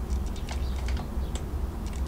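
Light, scattered clicks and taps of small items being moved about while searching for a pair of tweezers, over a steady low hum.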